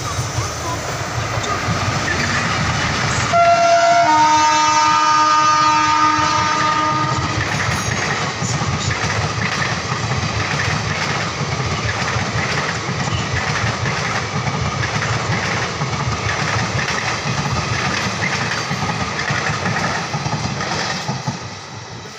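An Indian Railways WAG-5P electric locomotive hauling a passenger train past. Its horn sounds for about four seconds a few seconds in, and is the loudest part. Then a long rake of ICF coaches rolls by with a steady, rhythmic clatter of wheels over rail joints, fading near the end.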